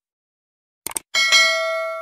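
Subscribe-button sound effect: two quick mouse clicks about a second in, then a small notification bell dings, struck twice in quick succession, and rings on as it fades.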